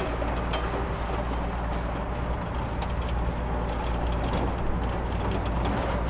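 Motorised metal roller shutter door rolling down: a steady low rumble with light clicks and rattles from the slats.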